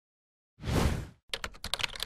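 Intro sound effects: a short, loud whoosh-like hit about half a second in, then a quick run of keyboard-typing clicks.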